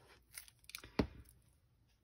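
A sheet of patterned paper being handled, with light rustles and one sharp tap about a second in.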